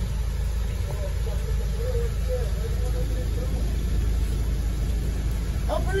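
Car engine idling close by, a steady low rumble, with a faint voice in the background.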